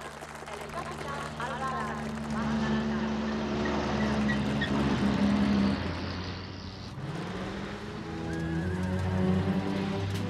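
Film soundtrack mix: a motor vehicle's engine running, with its pitch rising about seven seconds in, under film score music and some voices.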